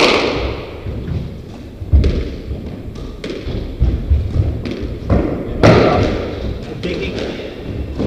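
Squash ball being struck by racquets and hitting the court walls during a rally: a string of sharp, echoing hits, the loudest at the very start and about two-thirds of the way through.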